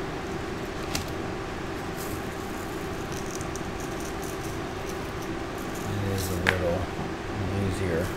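Steady background hum with a few light clicks and taps, and a quiet voice murmuring briefly near the end.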